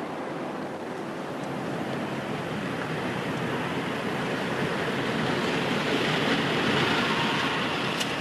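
Street traffic with a car approaching, its engine and tyre noise growing louder over the last few seconds as it nears.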